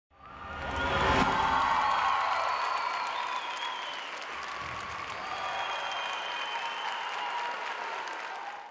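Audience applauding and cheering, fading in over the first second and then holding steady.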